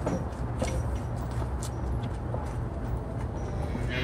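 Yoked team of American Milking Devon oxen walking on packed dirt: faint, scattered hoof steps over a steady low rumble.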